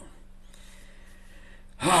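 Quiet room tone with a faint steady hum, then a man's voice starts up near the end.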